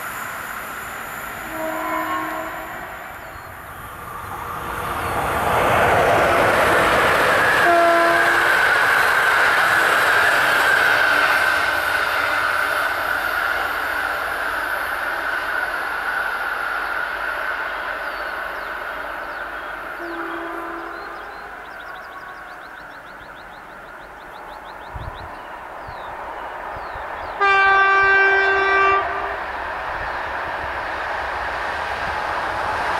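The rush of an electric passenger train passing close by, with short horn toots. Near the end, an approaching train's horn sounds once: a steady tone lasting about a second and a half, the loudest sound here.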